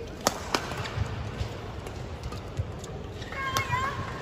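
Badminton rally: sharp cracks of rackets striking the shuttlecock, two in quick succession about a quarter second in and another near three and a half seconds, over low thuds of footfalls on the court. Shoes squeak on the court mat near the end.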